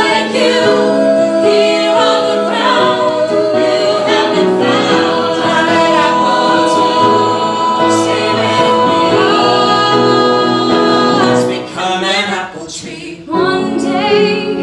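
An ensemble of men and women singing a musical-theatre song in harmony, holding long notes. The singing drops away briefly about twelve seconds in, then comes back in full.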